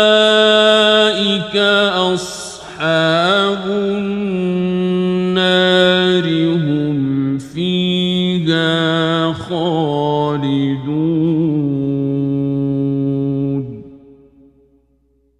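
A male voice reciting the Quran in the melodic mujawwad (tajweed) style, drawing out long ornamented notes with a few brief breaths. The voice stops just before the end.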